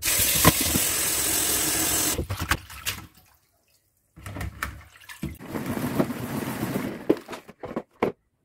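Tap water running hard into a plastic salad spinner of shredded red cabbage in a stainless steel sink, cutting off after about two seconds. After a short pause, softer water sloshing with light clicks as a hand rinses the cabbage in the filled bowl.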